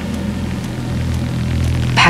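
Steady electronic drone of sustained low bass tones under an even wash of white-noise hiss, the ambient intro of a DJ mix.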